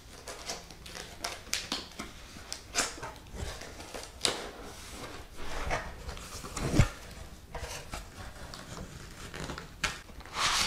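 A cardboard shipping box being opened and rummaged by hand: scattered scrapes, taps and rustles of cardboard flaps and packing, with a dull knock about two-thirds of the way through.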